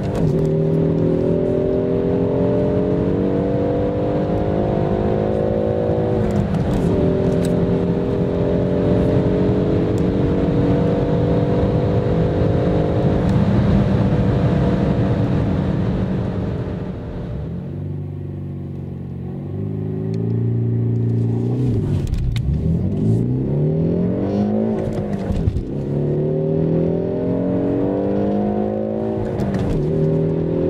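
Peugeot 308 GT's 1.6-litre turbocharged four-cylinder engine at full throttle, heard from inside the cabin. The revs climb steadily, and the pitch drops at each upshift of the six-speed manual gearbox. Past the middle the throttle is released and the engine falls to a quieter, lower note. Then comes a fresh hard acceleration with quick shifts through the lower gears, the revs rising again.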